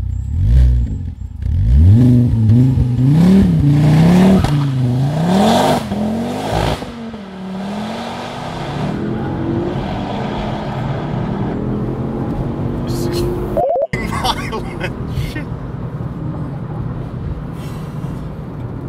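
Turbocharged 2.5-litre five-cylinder engine of a tuned Ford Focus RS500 under hard driving, heard from inside the cabin. In the first several seconds the revs swing up and down repeatedly, then settle into a steadier pull that slowly rises in pitch as the car accelerates.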